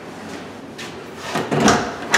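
Closet door being opened: a faint click a little under a second in, then a louder clatter of latch and door near the end.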